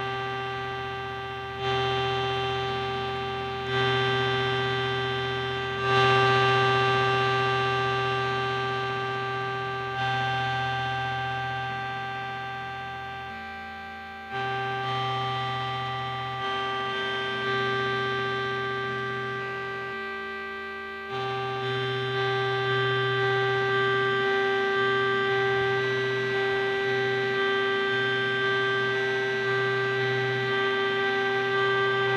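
Live electronic ambient music: a held synthesizer drone chord with a strong sustained middle note, swelling with a fresh attack every two to four seconds and fading slowly between them. A low bass tone drops out briefly twice, and toward the end the swells turn into quicker, smaller pulses.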